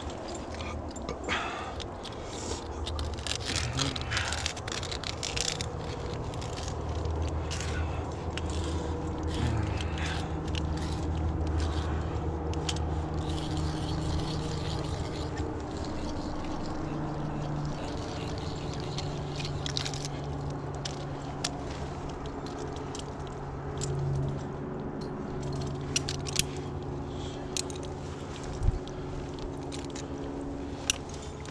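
Ice climbing hardware on a lead climb: sharp metal clicks, knocks and scrapes from ice tools, an ice screw and carabiners against the ice and each other, thickest in the first few seconds and again near the end, over a steady low hum.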